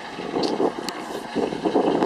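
Steady rushing street-traffic noise, with a couple of faint clicks about half a second and a second in.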